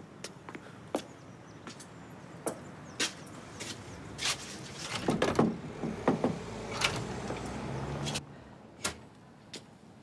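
Street background noise with a vehicle going by, swelling through the middle and cutting off sharply about eight seconds in, with scattered clicks and knocks as a shop door is handled and opened.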